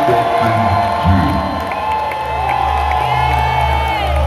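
Rock concert crowd cheering and whooping, with many voices rising and falling at once. A low steady drone comes in about halfway through.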